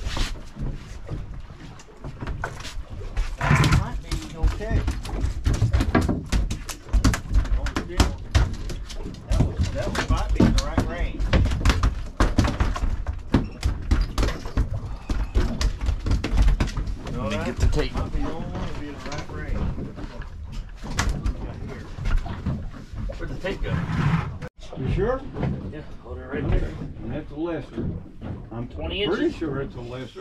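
Indistinct voices talking aboard a fishing boat, over a heavy, uneven rumble of wind buffeting the microphone, with many sharp knocks and clatters of handling on the fibreglass deck. The sound cuts out for an instant about three-quarters of the way through.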